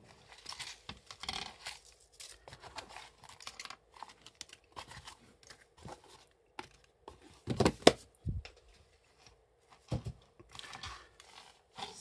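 Hands unpacking a cardboard box: rustling and scraping of packaging and small contents being lifted out, with scattered light clicks and a few louder knocks about two thirds of the way through and near the end.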